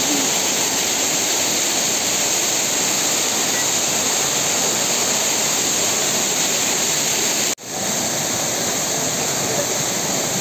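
Fountain water splashing steadily: water cascading down a stone wall fountain and jets falling into the basin. The sound cuts out for an instant about three-quarters of the way through, then carries on.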